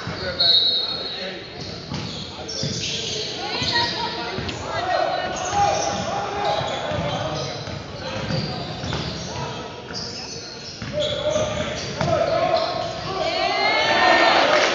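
A basketball bouncing on a hardwood gym floor during play, with sneakers squeaking near the end, heard in a large gym.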